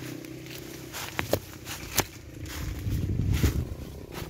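Footsteps and rustling of avocado leaves brushing against a handheld phone as it is moved through the branches, with a few sharp clicks between one and two seconds in and low handling rumble later on.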